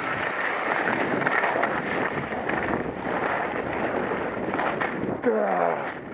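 Skis hissing and scraping over packed snow during a run, with wind rushing over the action camera's microphone. Near the end comes a brief vocal sound that falls in pitch.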